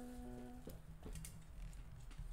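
A woman's short hummed "mm", one steady note lasting under a second, then faint clicks and rustling as she rummages through her nail supplies.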